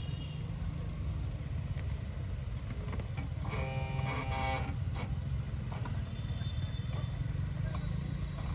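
Suzuki Jimny engine running with a low, steady rumble close by. About three and a half seconds in, a brief faint pitched call sounds in the background.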